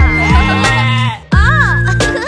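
Cartoon lamb bleating, with wavering, gliding pitch, over a children's song backing track.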